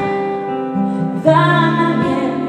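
Live acoustic performance: a woman singing over acoustic guitar, holding a long note before a louder new phrase begins about a second and a quarter in.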